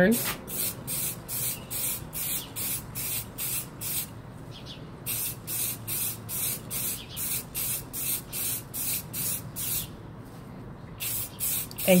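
Aerosol can of Rust-Oleum 2X Ultra Cover metallic silver spray paint, sprayed in rapid short bursts of hiss, about three a second, with a brief pause about a third of the way in and another near the end.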